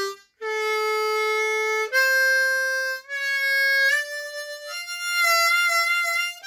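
A diatonic harmonica in C, played alone as a second-position (cross harp) blues scale. About six single notes are held one after another and climb step by step in pitch. One note slides up in a short bend about four seconds in, and the last held note wavers slightly.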